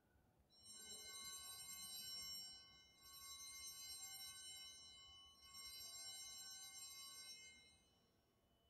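Altar bells rung three times as the chalice is elevated after the consecration. Each ring is a faint, high, sustained chime lasting about two seconds: the first comes about half a second in, then at about three seconds and about five and a half seconds.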